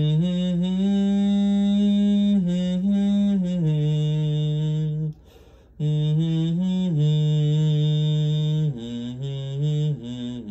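A man humming a slow melody in long held notes that step up and down in pitch, in two phrases with a short break for breath about five seconds in.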